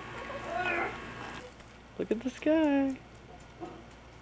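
A one-year-old baby vocalizing: a few short sounds, then one held, pitched 'aah' about halfway through that falls a little in pitch.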